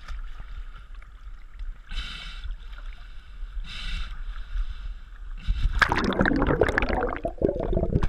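Seawater sloshing around a GoPro HERO 3 Black's waterproof housing as it bobs at the surface, with a swish about every two seconds as waves wash over it. About five and a half seconds in, the camera goes under and a much louder churning of water and bubbles takes over.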